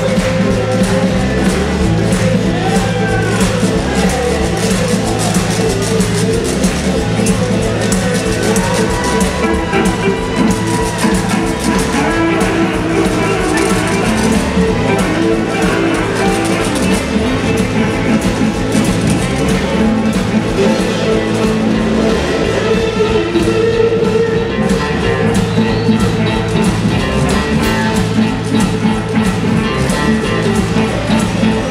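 Live blues band jamming: several electric and acoustic guitars over drums, with melody lines sliding in pitch above a steady beat.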